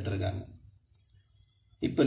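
A man's voice speaking, trailing off in the first half second, then about a second of near silence before his speech starts again near the end.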